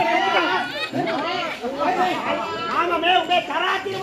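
Speech only: performers' voices talking on without a break through the whole stretch.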